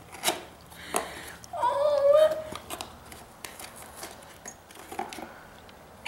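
A cardboard gift box being opened by hand and a ceramic mug pulled out of it: scattered rustles and light knocks of cardboard and mug. A short voiced exclamation comes about two seconds in.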